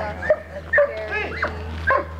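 A dog whining and yipping: about five short high-pitched cries in quick succession, each rising and falling in pitch.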